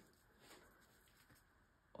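Near silence: room tone, with a couple of faint small ticks.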